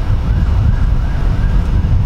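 Wind buffeting the microphone with a loud low rumble, and under it a faint distant siren wailing up and down in quick repeated sweeps.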